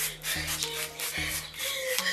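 Short repeated hissing strokes of a trigger spray bottle spritzing, with plastic packaging being rubbed, over background music with a bass line.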